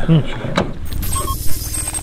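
Metal buckles of an aircraft cockpit's safety harness clinking and clicking as the occupants are strapped in, with a sharp knock about a second and a half in. Voices are heard at the start, and a steady low hum runs underneath.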